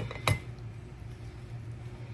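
A single sharp click from a plastic seasoning shaker bottle being handled about a quarter second in, over a low steady hum.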